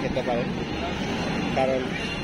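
Brief stretches of a person's voice, too indistinct to make out, over a steady low background rumble.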